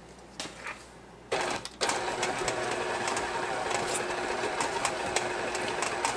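KitchenAid stand mixer's motor switching on about a second in, stopping for a moment, then running steadily as the beater works through thick cookie dough.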